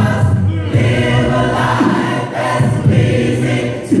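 Mixed gospel choir of men's and women's voices singing a cappella in harmony, with held notes and no instruments.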